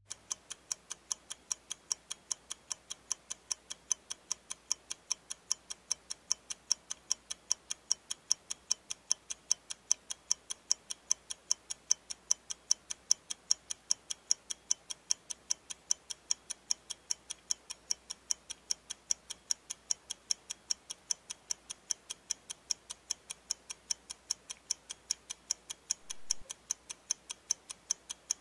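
Clock-ticking sound effect: even ticks a few times a second, running as a 30-second countdown timer for a task.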